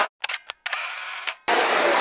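Abrupt edit cuts between very short clips: the sound drops out to dead silence several times, broken by a couple of brief clicks and a short stretch of faint hiss. Crowd chatter in a busy indoor hall comes back about one and a half seconds in.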